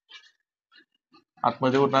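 A few faint scratches and taps of chalk on a blackboard as an equation is written. About one and a half seconds in, a man's speaking voice begins.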